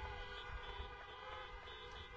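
Many car horns honking together in reply to an applause line: several steady, overlapping tones at different pitches.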